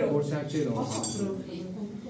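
A teaspoon clinking against a small glass tea cup, a few light chinks about a second in, with voices talking.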